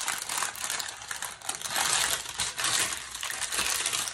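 Thin white wrapping paper rustling and crinkling as it is unfolded from around a glass Christmas bauble, a continuous crackle of many small sharp crinkles.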